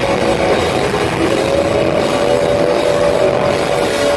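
A live heavy rock band playing loud, with distorted guitar and drums in a dense wall of sound. A single long note is held from about a second in.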